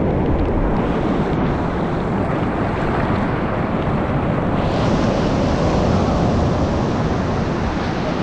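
Sea surf breaking and washing in over the sand at the water's edge: a loud, steady rush of waves and foam that swells a little past the halfway point, with wind on the microphone.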